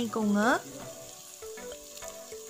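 Onion-tomato masala frying in a pressure pan, with a faint steady sizzle, under background music with held notes. A voice is heard in the first half-second.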